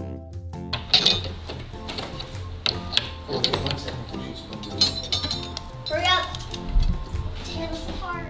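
Bouncy background music, with light clinks and knocks of small metal utensils being handled and hung on the wooden pegs of a toy kitchen.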